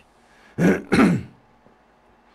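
A man clearing his throat twice, in two quick harsh bursts about a second in.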